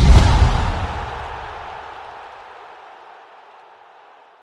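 Outro sting for a sports-streaming end card: one loud, deep impact hit with a brief whoosh on top, fading slowly away over about four seconds.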